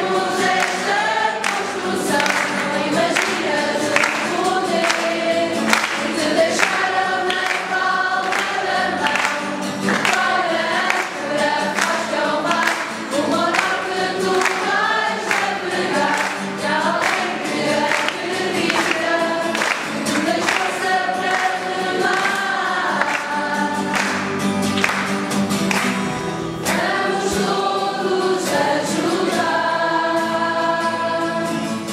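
A choir of young voices singing a church song together, accompanied by strummed acoustic guitars.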